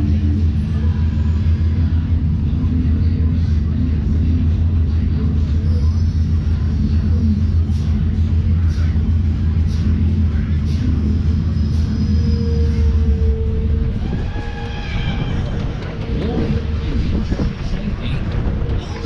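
Steady low rumble of a fairground ride in motion as it carries the rider high and back down, easing near the end, with fairground music faintly underneath.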